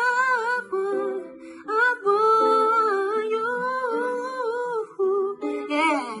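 Young man singing a long wordless vocal run, holding notes whose pitch bends and wavers, broken by short pauses, over a soft plucked-guitar accompaniment.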